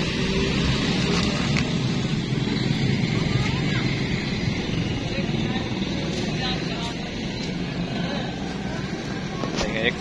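Steady background din with indistinct voices in it.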